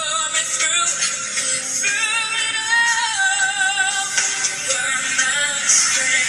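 A young female singer singing a ballad over instrumental accompaniment, in long held notes with vibrato.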